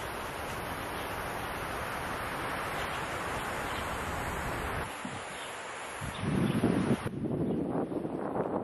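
Outdoor wind: a steady rustle of wind through tree leaves, with louder, lower gusts buffeting the microphone in the last two seconds.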